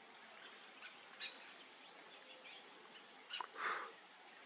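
Faint background of bird chirps and calls, with a sharp click a little over a second in and a short, louder burst of rasping noise near the end.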